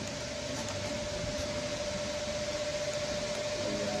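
Steady hiss with a single steady mid-pitched tone running through it, even throughout.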